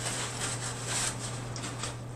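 Soft, close-miked mouth sounds of chewing: a few faint wet clicks over a steady low hum.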